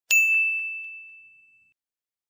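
A single bright bell ding from the notification-bell sound effect of a subscribe-button animation. It strikes once just after the start and rings out, fading over about a second and a half.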